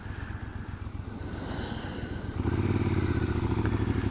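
Triumph Scrambler parallel-twin motorcycle engine idling low, then pulling away about two and a half seconds in, its note growing louder as it accelerates.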